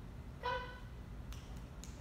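A woman's voice calling a dog with a single short word, "Come," then two faint clicks about half a second apart over a low steady hum.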